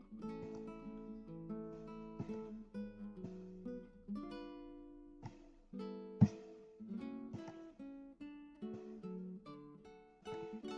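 Quiet background music of plucked acoustic guitar, picking a run of single notes and chords. There is one sharp click about six seconds in.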